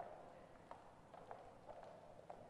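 Faint footsteps on a gymnasium floor: a few light, irregularly spaced taps over quiet room tone.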